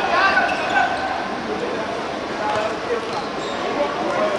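Voices calling out across a small-sided football pitch during play, with occasional thuds of the football being kicked and bouncing on the artificial turf.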